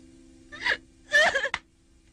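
A woman crying, with two short gasping sobs, the second longer, about half a second and a second in.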